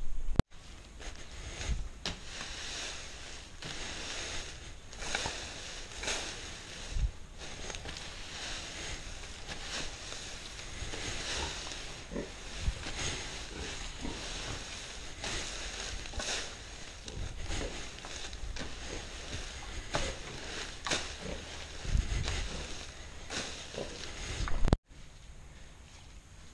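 Dry shredded corn fodder rustling and crackling as it is forked and spread by hand for bedding, with a few dull low thumps.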